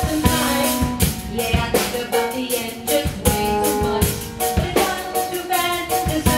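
Live band playing an instrumental passage: a drum kit keeps a steady beat under bass guitar and other amplified instruments.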